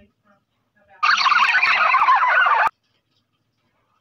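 A loud, rapidly wavering animal call, played as a dropped-in sound clip. It starts abruptly about a second in and cuts off sharply under two seconds later.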